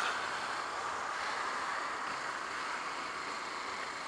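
Steady wind and road noise of a Honda CBF125 motorcycle being ridden along, an even rush with no sudden events.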